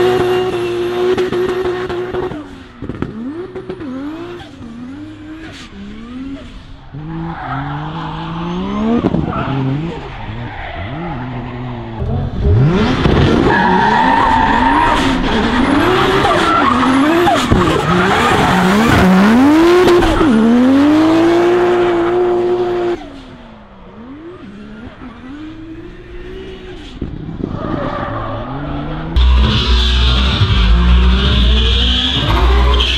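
BMW E46 drift car's engine revving hard up and down through a drift, with tyres squealing and skidding. The sound drops away for stretches after about two seconds and again after about twenty-three seconds, then comes back.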